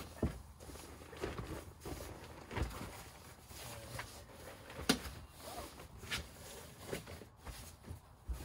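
A quilted waterproof cargo liner rustling and shuffling as it is pushed and smoothed across a car's cargo floor, with irregular soft knocks from hands and knees on it, the loudest about five seconds in.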